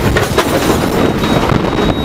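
Loud, continuous rumbling, rushing noise, with a thin high steady tone over it in the second half.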